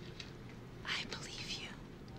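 A woman's soft, breathy whisper lasting under a second, about a second in, over faint room tone.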